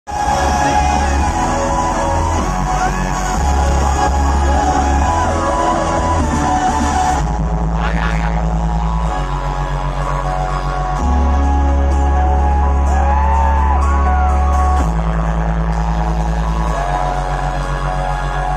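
Loud electronic dance music through a festival sound system, with deep sustained bass notes that change every few seconds. A crowd cheers and whoops over it, most strongly in the first seven seconds.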